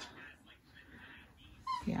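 A mostly quiet room with a faint, brief high-pitched whine near the end, just before a woman says "yeah".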